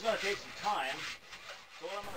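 A 1 7/8-inch hole saw turned by a hand-cranked drill, cutting into 4-inch PVC pipe. It goes quieter in the second half as the cut finishes.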